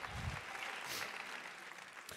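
Congregation applauding faintly, the clapping easing off toward the end. A short low thump comes just after the start.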